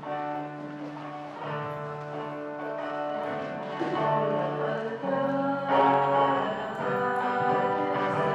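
Entrance hymn at mass: music with instruments and singing, growing louder about halfway through.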